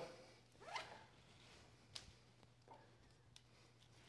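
Faint handling of a nylon ratchet tie-down strap: the webbing is pulled through the ratchet buckle with one short zip just under a second in, followed by a light click about two seconds in and a few fainter ticks, over a faint steady low hum.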